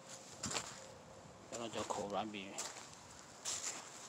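A person speaking a few words about halfway through, with a few short scuffing noises between, footsteps on dry sandy soil.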